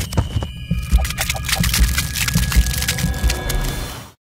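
Sound effects for an animated logo outro: a rapid stream of clicks and ticks over irregular low thumps, with a few steady high tones, cutting off just after the end.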